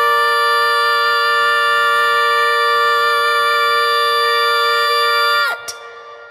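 Clarinet and a young woman's singing voice holding one long, steady final note together, which stops about five and a half seconds in.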